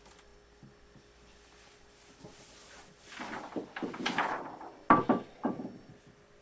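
A toy being handled: a run of clattering and knocking that starts about three seconds in, with one sharp knock, the loudest, about five seconds in, followed by a couple of lighter clacks.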